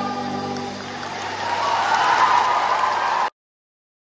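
A choir's singing fades out, and audience applause builds in its place, loudest near the end before the sound cuts off abruptly.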